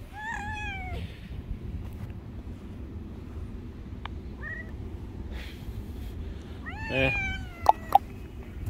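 Domestic cat meowing: a falling meow near the start, a short chirp about halfway, and another meow near the end. Two sharp clicks follow just before the end.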